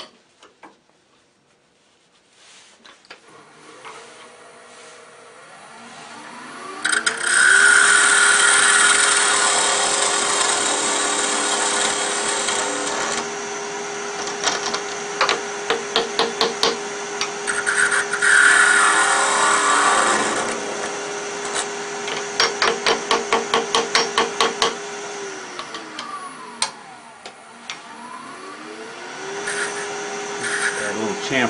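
Wood lathe motor spinning up, running steadily, then spinning down near the end and starting to rise again. Over it, a parting tool cuts a small wooden tenon to size in two long scraping cuts, with runs of rapid ticks between and after them.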